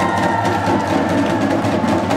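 Protest drums beating a fast, steady rhythm, with one long, high, held voice sounding over them.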